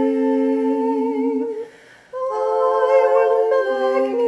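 A woman's unaccompanied voice, layered into several harmony parts, sings a slow canon chant in long held notes. The voices break off briefly a little before halfway, then come back in with more parts sounding together.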